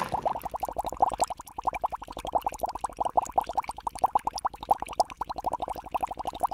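Bubbling sound effect: a fast stream of short, slightly rising plops, about ten a second, that starts abruptly.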